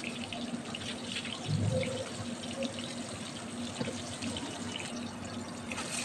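Pointed gourd pieces frying in hot mustard oil in a steel kadai: a steady low sizzle with faint scattered crackles.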